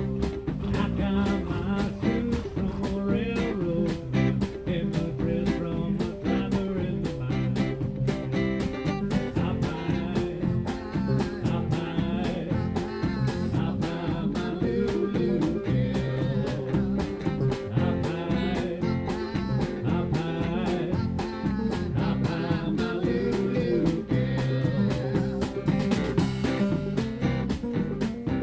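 Live country-blues band playing a song, with electric and acoustic guitars over electric bass and a drum kit keeping a steady beat.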